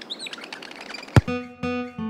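Birds chirping over a soft outdoor ambience, then a single sharp thump about a second in. Right after it, plucked-string music notes begin.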